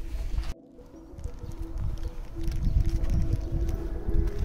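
Wind rumbling on a phone microphone outdoors, with a faint steady hum under it and a sudden cut about half a second in.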